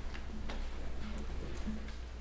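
Footsteps on a wooden platform: four sharp clicks, irregularly spaced, over a steady low hum.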